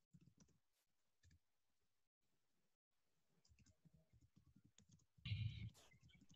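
Near silence with faint scattered clicks, and a brief louder burst of rustling noise about five seconds in.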